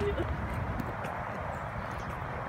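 Wind buffeting the phone microphone in irregular low rumbles, over a steady rushing background.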